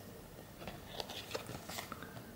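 Small card-stock baseball sticker cards being handled and shuffled between the fingers: faint, scattered light clicks and rustles, clustered in the second half.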